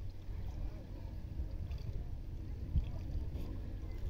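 Wooden boat being poled along calm water: a steady low rumble of water and wind, with one soft thump about three seconds in.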